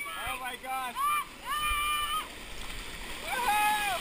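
High-pitched excited yells from people riding inner tubes into rushing water: a quick string of short cries, then two long held whoops, over the rush and splash of the river.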